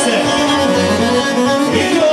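Bosnian folk band playing live: violin, electric keyboard and a long-necked saz, over a repeating bass note from the keyboard.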